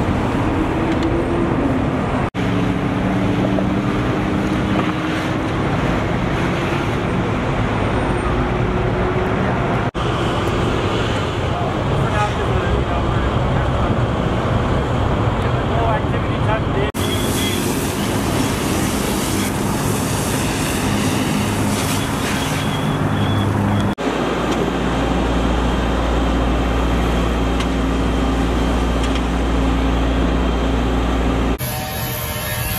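Steady low drone of running diesel engines from fire apparatus, with a rumbling noise bed; the drone changes abruptly several times, with a deeper, louder hum in the last few seconds.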